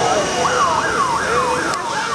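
A siren-like wail that sweeps quickly up and then falls, repeating nearly three times a second.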